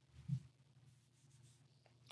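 Near silence: quiet room tone, with one faint, short low sound about a third of a second in.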